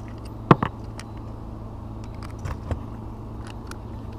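Metal tool handling as a 5/16 in socket is fitted to a cordless drill: one sharp click about half a second in, then a couple of light knocks, over a steady low hum.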